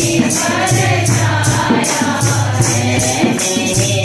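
Devotional bhajan being sung into a microphone, with group voices, a tambourine-like jingle keeping an even beat a few times a second, and a low steady accompaniment that pulses on and off.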